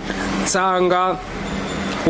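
A man's voice speaking briefly over the rumble and hiss of a passing road vehicle, whose noise fills the second half.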